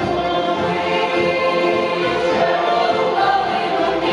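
Ukrainian folk choir singing together in harmony, many voices holding sustained notes.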